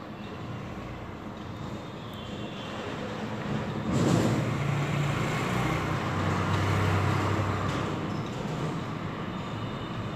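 A low mechanical rumble with a steady low hum, like a passing vehicle, swelling about three to four seconds in and fading again toward the end.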